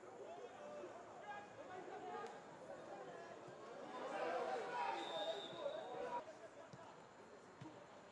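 Indistinct voices calling and shouting across a football pitch during play, growing louder about four seconds in, then dropping back after about six seconds.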